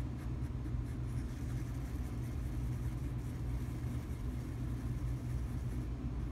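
Steady low hum, as of a motor or engine running in the background, holding level throughout; the stirring of the epoxy adds no distinct sound.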